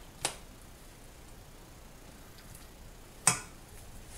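Two sharp clinks of a metal slotted spoon against a metal saucepan, a light one just after the start and a louder one about three seconds later, with little sound between them.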